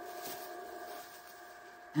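Faint rustling of a clear plastic food bag handled by hand, over a faint steady hum.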